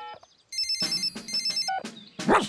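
Cartoon mobile phone ringing: a rapid, high electronic warble in two bursts, starting about half a second in, just after a short beep that ends the keypad dialling.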